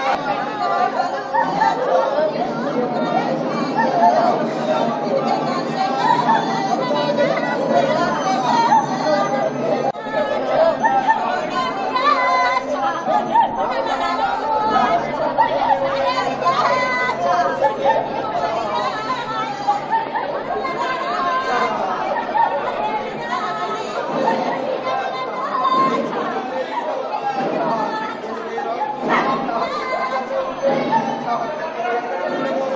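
Crowd chatter: many people talking at once in a large hall, a continuous blur of overlapping voices with no single speaker standing out.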